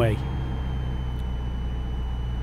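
Steady drone of a Piper PA-28's four-cylinder piston engine and propeller heard inside the cockpit on final approach, with a faint steady high whine over it.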